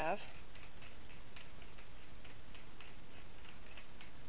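Faint, irregular light clicks of metal threads as a Kyberlight dual saber connector is screwed onto a Saberforge lightsaber hilt, over a steady background hiss.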